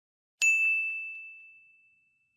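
A single high ding sound effect, struck about half a second in, ringing out and fading away over about a second and a half.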